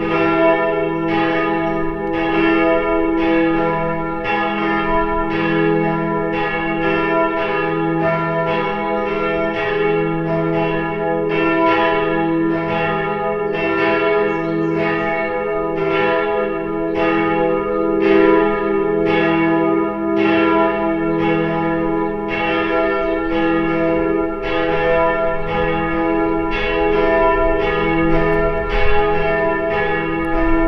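Swinging church bells of Växjö Cathedral ringing steadily for a service, struck in an even rhythm of about three strokes every two seconds, each stroke ringing on under the next.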